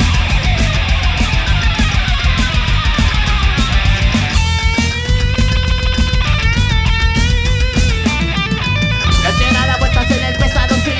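Rock band playing live: distorted electric guitars, bass guitar and drums at full volume. From about four seconds in, a lead line of long sustained notes with bends and vibrato rides over the band.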